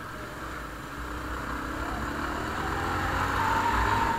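Motorcycle engine pulling up through the revs as the bike accelerates, heard from the rider's own bike with wind noise on the microphone growing louder as speed builds. A steady high tone comes in near the end.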